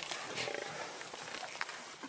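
African lions growling faintly as they attack a Cape buffalo, with a few short scuffs and knocks from the struggle.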